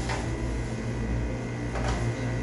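A steady low hum, with a faint click at the start and another near the end.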